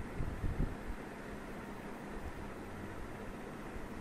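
Steady low background hiss and hum of room tone on the microphone, with a few faint low bumps in the first half second.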